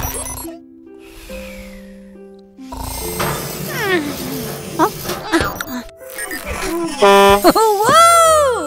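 Cartoon soundtrack of light background music with a character's wordless vocal sounds, rising and falling in pitch, loudest near the end.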